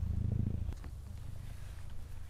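Low, fluttering drone of a kite's hummer (sendaren) vibrating in strong wind. It is louder for the first part and weakens about two-thirds of a second in.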